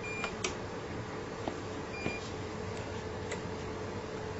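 UPS running on battery and sounding its power-failure alarm: two short high beeps about two seconds apart. Under them is a steady hum and fan noise, with a couple of faint clicks.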